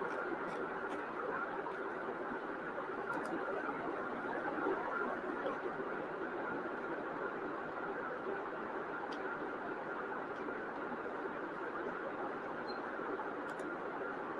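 Steady background noise from an open microphone, with a few faint clicks.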